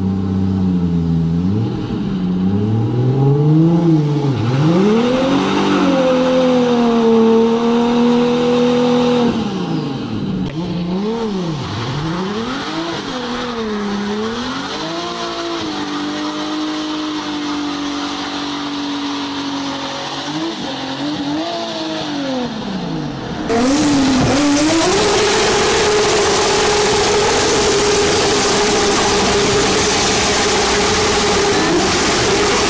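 An SUV engine revving up and down again and again, its pitch rising and falling. About 23 seconds in, a loud, steady rushing noise starts suddenly, and the engine holds a steady high pitch under load.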